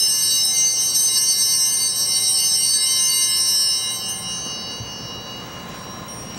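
Altar bells rung at the elevation of the chalice, marking the consecration of the wine: a ring of many high, clear tones that lingers and fades away by about five seconds in.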